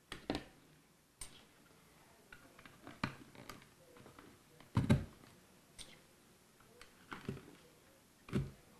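Scattered light clicks and knocks of wooden frame sections and plastic corner wedges being handled and pressed into the corner grooves, the loudest knock about five seconds in.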